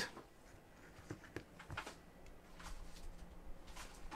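Faint air noise of a Gamemax Velocity ARGB case fan running at full speed, with a slight buzz from the blades, and a few faint clicks.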